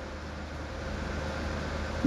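Sewing machine running steadily as it stitches, a continuous mechanical whir with a faint whine that grows slightly louder.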